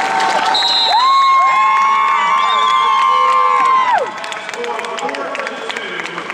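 Arena crowd cheering and yelling as a college wrestling bout ends, several voices holding long shouts for about three seconds before the noise drops off. A short high whistle sounds about half a second in.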